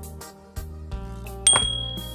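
Background music, and about one and a half seconds in a sharp click with a short ringing chime: the piece-placement sound effect of a computer xiangqi board as a horse is moved.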